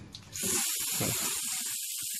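Water spraying onto solar panels: a steady hiss that starts about a third of a second in.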